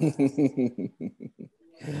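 People laughing: a run of quick ha-ha pulses, about seven a second, that trails off about a second and a half in.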